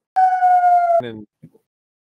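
A loud, high censor bleep lasting about a second, starting and stopping abruptly, covering a spoken word. A man's voice follows it briefly.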